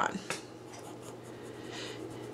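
Purple Crayola wax crayon rubbed in swirls across fabric: a faint, continuous scrubbing that grows a little louder near the end.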